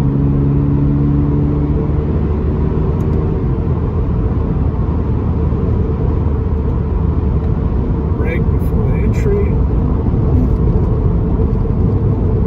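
Interior sound of a 2022 Toyota GR86 under way. The 2.4-litre flat-four boxer engine holds a steady note for the first two seconds or so, then fades beneath a constant low rumble of road and tyre noise in the cabin.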